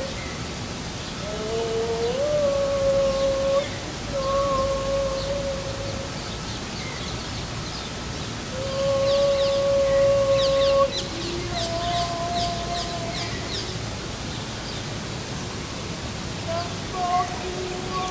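Several voices holding long, steady chanted notes, each held for a second or two, sometimes overlapping at different pitches, one sliding upward about two seconds in. Short high chirps come in the middle.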